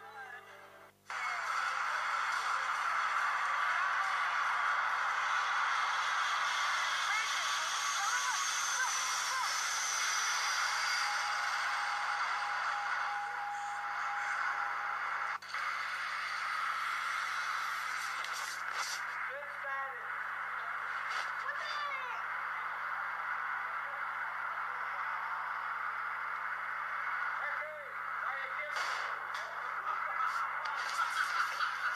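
A video's soundtrack, voices and music, playing through a screen's small speaker and picked up by a second device. It starts suddenly about a second in and runs on steadily.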